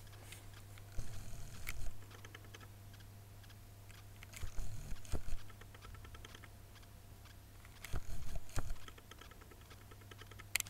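Handling noise from a glass foundation bottle turned in the fingers close to the microphone: three short bursts of small clicks and taps with low knocks, near the start, in the middle and near the end.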